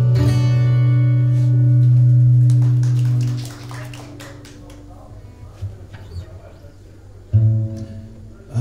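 Acoustic guitar's final chord of a song, strummed and left to ring for about three seconds before fading away. A few faint clicks follow in the quiet.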